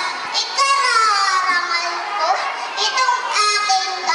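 A young child's voice speaking loudly from a stage in long, drawn-out phrases whose pitch slides up and down, in the manner of a recitation.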